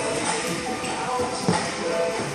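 Background music with steady held notes, and a single thump about one and a half seconds in.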